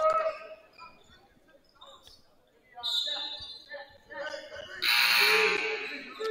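A gymnasium scoreboard horn sounds with a harsh buzz for about a second near the end, the scorer's table signalling a substitution. Quieter gym sounds come before it.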